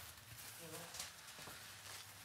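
Quiet room tone with a brief faint voice just under a second in and a few light knocks, like steps or items being moved.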